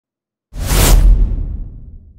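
Cinematic whoosh sound effect for an intro title: a sudden rush of hiss over a deep rumble starts about half a second in, then fades away over about a second and a half.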